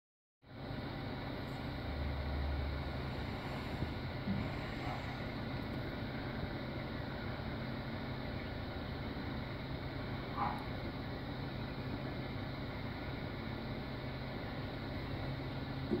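Steady low engine drone, in keeping with the utility bucket truck's engine running to power the boom, with two faint short chirps about five and ten seconds in.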